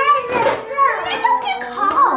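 Young children's voices, high-pitched excited chatter and squeals with gliding pitch.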